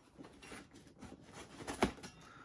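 Kitchen knife slitting the packing tape on a cardboard box: faint scratching and rasping, with one sharper tick near the end.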